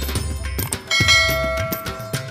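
A metal temple bell struck once about a second in, its several tones ringing on and slowly fading. Underneath runs background devotional music with a steady beat.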